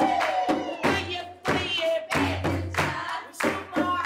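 A woman's voice singing a folk song, with hand-held frame drums beaten and hands clapping along in rhythm.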